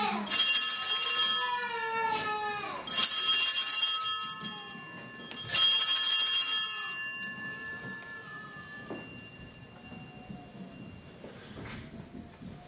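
Altar bells rung three times, about two and a half seconds apart, each ring clear and high and dying away slowly, the last fading out about nine seconds in. They mark the elevation of the chalice at the consecration of the Mass.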